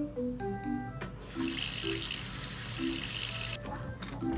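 Kitchen tap running into a stainless steel sink over dishes, turned on about a second in and shut off suddenly near the end. Soft mallet-instrument background music plays throughout.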